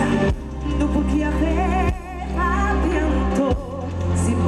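A woman singing a pop song live into a microphone through a stage sound system, with vibrato on held notes, over an amplified backing with a strong bass line.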